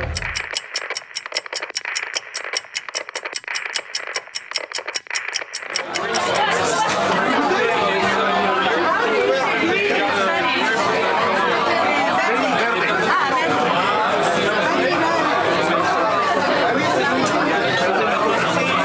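For about six seconds, a thin, rapidly clicking static-like glitch effect. It then cuts to the steady hubbub of a packed bar crowd talking over one another.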